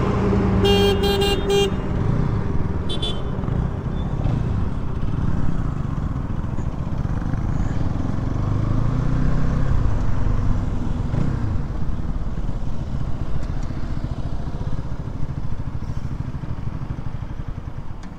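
Motorcycle engine running under the rider with wind buffeting the microphone, its pitch rising and falling as the bike slows and picks up again. A vehicle horn honks about a second in, with a shorter toot near three seconds.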